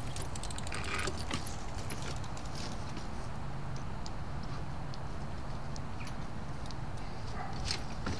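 A bicycle being brought up on grass, with light metallic ticking and clicking from its freewheel and frame, and a louder clatter near the end as it is stopped and set down. A steady low hum runs underneath.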